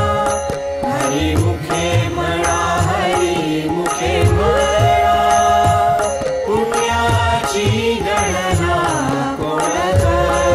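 Varkari-style devotional bhajan music with no words: a melodic line of held and gliding notes over a steady low percussion rhythm.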